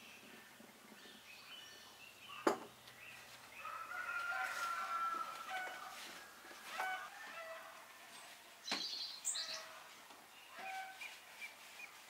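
A rooster crowing once in the background about four seconds in, with scattered short chirps of small birds later on. A single sharp knock comes a couple of seconds in.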